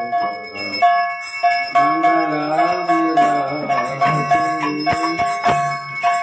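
Hand bells ringing continuously during a Hindu temple's mangala arati worship, over a crowd of voices chanting. Sharp metallic strikes come in quick succession from about a second and a half in.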